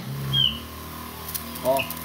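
Electric backpack sprayer's pump motor switching on and running with a steady electric hum as it sprays from the wand.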